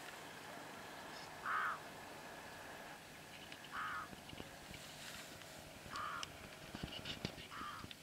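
A crow cawing four times in the background, short calls about two seconds apart.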